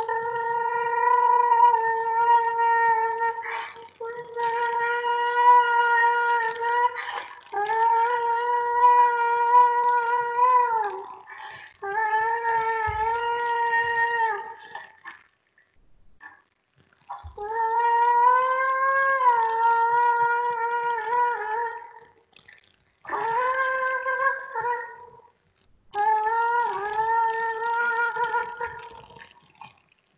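A wind instrument playing long held notes with slight bends in pitch, in phrases of two to four seconds separated by short gaps.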